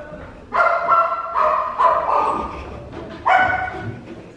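A dog barking: four quick barks in a row in the first two seconds, then one more just after the three-second mark.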